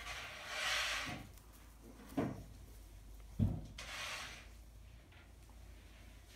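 Goats moving about on straw bedding in a wooden pen: rustling of straw, with two dull knocks about two and three and a half seconds in.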